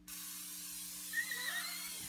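Aerosol can of coconut oil spray hissing steadily as it is sprayed onto skin, starting suddenly.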